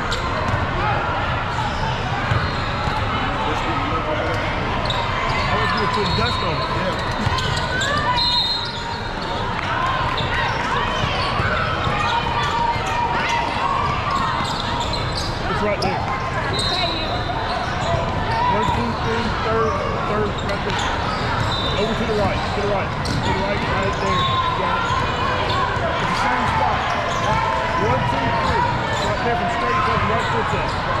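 Indoor basketball game ambience in a large, echoing hall: a basketball bouncing on the wooden court over a steady babble of players' and spectators' voices. Brief high squeaks come in now and then.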